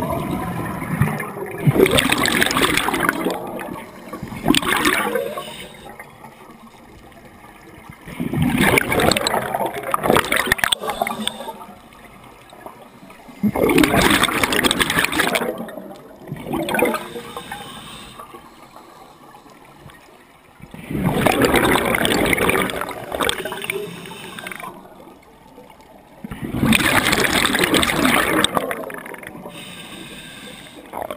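Scuba diver breathing through a regulator underwater, recorded in a GoPro HD2's waterproof housing: five bursts of rushing, bubbling exhaust, each two to four seconds long and about every six seconds, with quieter stretches between them as the diver breathes in.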